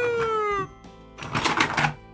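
Electronic siren of a toy fire engine wailing once, rising then falling in pitch and stopping about half a second in, then a short rushing noise a little over a second in, over quiet background music.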